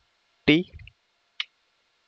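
Mostly speech: a man says the letter "t". About a second and a half in there is one short click, a computer keyboard key being pressed.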